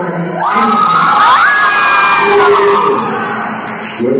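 A crowd cheering, with many voices whooping and shouting. The cheer swells about half a second in, with high held shouts sliding upward in pitch, and dies down near the end.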